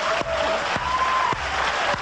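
Studio audience applauding, with laughter mixed in.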